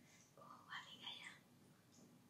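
A woman whispering softly, a short faint phrase about half a second in that lasts about a second.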